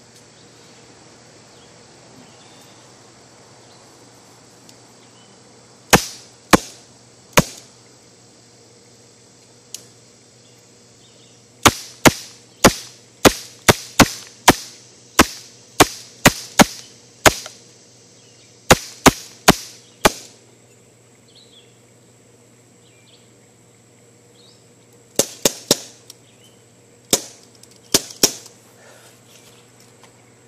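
A CO2 pellet pistol being fired at a glass-backed phone, about two dozen sharp cracks. Three come singly about six seconds in, then a fast string of about a dozen, four more around twenty seconds, and a last few near the end.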